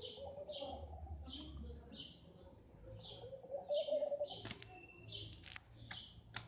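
A bird chirping over and over, about twice a second, with a lower wavering sound that is loudest a little before four seconds in. A few sharp clicks come near the end.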